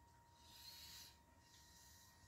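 Near silence, with one soft breath, a faint hiss about half a second in, from the person holding the camera close to the microphone.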